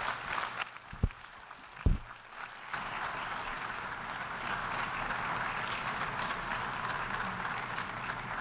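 Delegates in the assembly hall applauding steadily, starting about three seconds in. Before it come two dull low thumps about a second apart.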